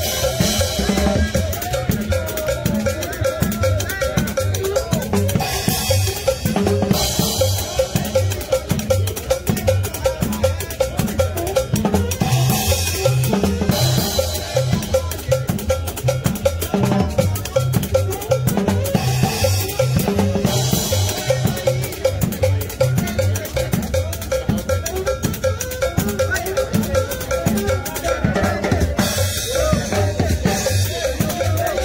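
Live band dance music driven by a drum kit and hand percussion, with a steady, even beat over a bass line. Cymbal crashes wash in every six or seven seconds.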